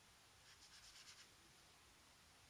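Near silence, with a few faint soft strokes of a synthetic paintbrush laying acrylic paint onto mixed media paper, about half a second to a second in.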